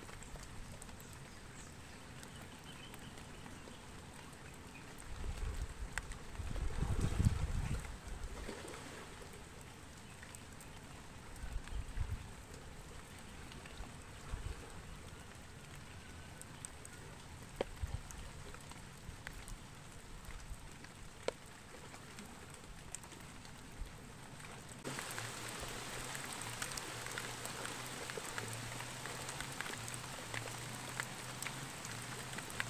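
Rain falling steadily, with many scattered faint raindrop ticks. A few low rumbles come about five to eight seconds in and again near twelve seconds, and the rain grows louder for the last few seconds.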